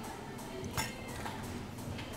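Quiet room tone at a laden table, with one faint short clink of tableware a little under a second in.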